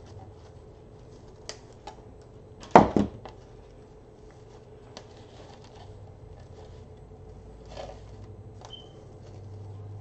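Light crinkling and clicking of deco mesh and ribbon loops being handled and tied on a wreath, over a steady low hum. A sharp double knock about three seconds in is the loudest sound.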